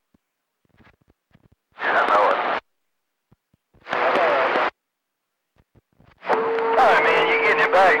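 CB radio receiver picking up skip: silent between transmissions with faint static crackles, broken by two short bursts of faded, garbled distant voice about two and four seconds in, each cut off abruptly. From about six seconds a stronger transmission comes in: a man talking over a steady tone.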